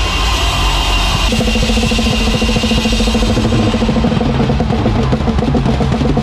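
Live worship band playing loud through the PA in a quieter passage: cymbal wash dies away over the first few seconds while sustained keys and bass carry a steady repeated note pattern, the drums mostly held back.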